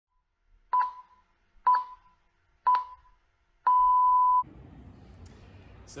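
Electronic beeps in a countdown pattern: three short beeps about a second apart, then one longer beep of the same pitch that cuts off suddenly. Faint room tone follows.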